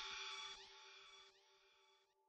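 The tail of a hip-hop instrumental beat fading out. Faint lingering tones die away within about half a second, then near silence.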